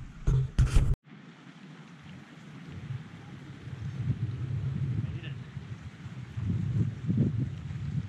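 Wind buffeting an action-camera microphone: a low, uneven rumble that gusts louder and softer, following a sudden cut about a second in.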